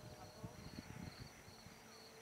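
Faint insect chirping, about two short chirps a second, over a steady high trill, with soft low rumbles in the first second.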